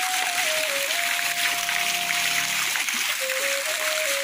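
Fountain water splashing and falling into a concrete basin, a steady hiss. Over it runs a slow melody of long held notes that step up and down in pitch.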